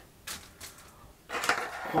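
Light handling noise of a coiled headphone aux cable and its metal 3.5 mm jack being picked up off a desk, with a short click early on, before a man starts talking near the end.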